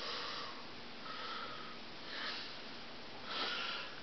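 Faint breathing: four soft breaths about a second apart.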